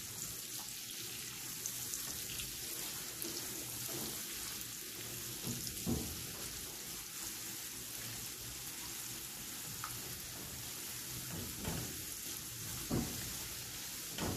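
Chopped garlic sizzling steadily in oil and butter in a non-stick pan on low heat, stirred with a silicone spatula, with a few soft scrapes of the spatula against the pan.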